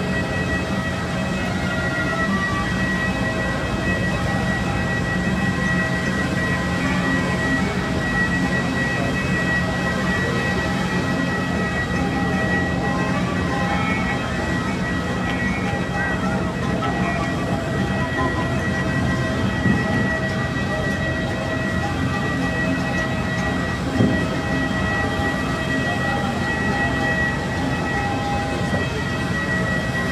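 Steady machine drone with a constant high-pitched whine over a low hum, typical of engines or ground power equipment running on an airport apron.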